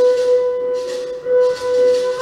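A St. Lucian folk band playing live. A violin holds a long note over acoustic guitar, banjo and hand drum, while a shaker keeps a steady rattling beat.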